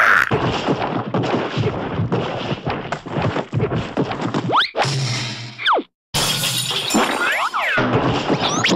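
Cartoon fight-cloud sound effects: a rapid jumble of crashes, smacks and thuds, with whistling glides rising and falling about halfway through and again near the end. The din breaks off for an instant about six seconds in.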